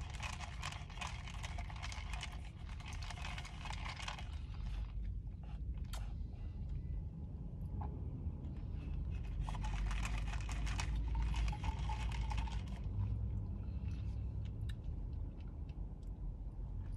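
Close-up mouth sounds of chewing brown sugar tapioca pearls and sipping tea through a wide boba straw, in two spells of scratchy chewing noise with a few sharp clicks between them, over a low steady rumble.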